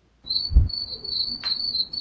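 A cricket chirping: a steady, high, finely pulsed trill that starts about a quarter second in, made by the cricket rubbing its wings together. A soft low thump comes about half a second in.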